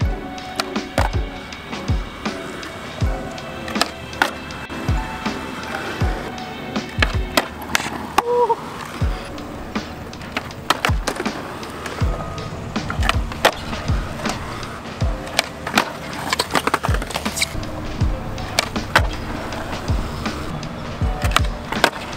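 Skateboard wheels rolling on concrete with the sharp pops and slaps of flip tricks, kickflips among them, under background music with a steady beat.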